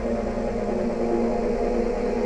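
Electronic dance music in a quiet passage: a synthesizer holds several steady low tones as a drone, with a flat level.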